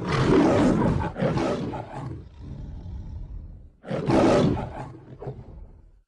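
Lion roaring twice: a long roar, then a shorter second roar about four seconds in that fades away.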